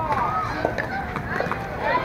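Voices of several people calling out and talking across a ballfield, overlapping, with no clear words.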